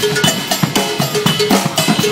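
Live percussion ensemble of two drum kits and congas playing a fast, steady groove together. Dense strikes land several times a second, with short pitched drum rings and cymbal wash mixed in.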